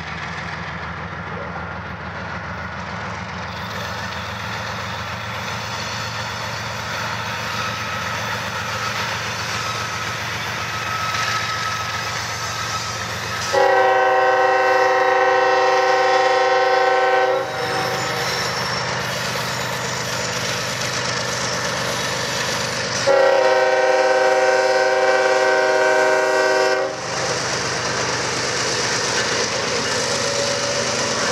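Three Norfolk Southern GE diesel freight locomotives working hard under power as they approach, their engine rumble slowly growing louder. Two long blasts of the lead locomotive's air horn, each about four seconds, sound midway through and again about ten seconds later.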